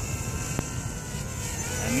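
Quadcopter drone's electric motors and propellers whirring steadily in flight, a hum of several steady tones over a low rumble, with a single tick about half a second in.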